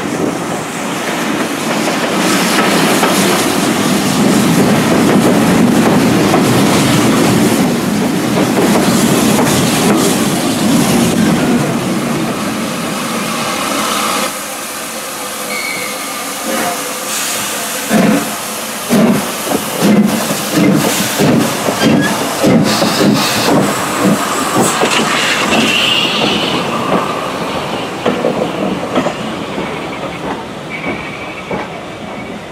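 Train running at speed, heard from an open window of a steam-hauled coach as a loud, steady rush. About halfway through the sound cuts to the Urie S15 4-6-0 steam locomotive No. 506 and its coaches passing close by, with a run of sharp beats about two a second.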